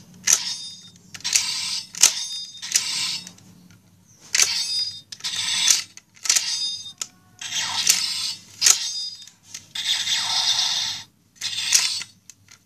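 Plastic parts of a DX Sakanamaru toy sword being worked by hand: a sharp click and then a short squeaky scrape, repeated about once a second, as the handle section snaps and slides along the blade.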